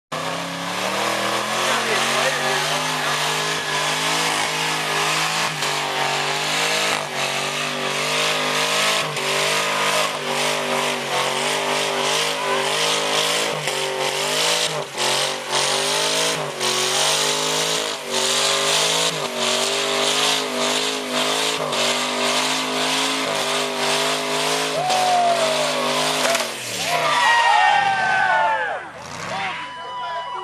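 Lincoln Mark VIII LSC's 4.6-litre V8 held at high revs in a burnout, its rear tire spinning and squealing on the pavement. About 27 seconds in the engine note falls away, the tire having blown, and people whoop and cheer.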